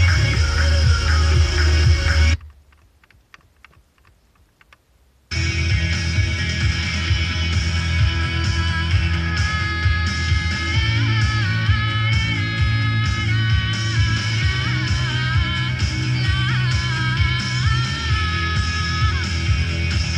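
FM radio playing a station's music broadcast. About two seconds in the sound cuts out as the tuner moves to the next station, with a few seconds of near silence and faint ticks. Music from the next station then comes in abruptly and plays on steadily.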